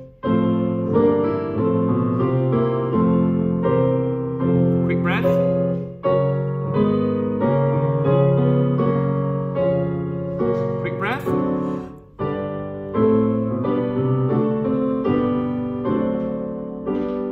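Piano with men's voices singing a vocal warm-up exercise on 'thee': a four-note descending scale, then a drop, a leap up and back down. The phrase comes three times, a semitone higher each time, with a short break about six and twelve seconds in.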